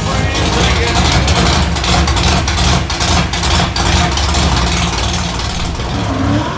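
Loud, unmuffled dirt-track stock car engine running close by, a dense low rumble that pulses unevenly.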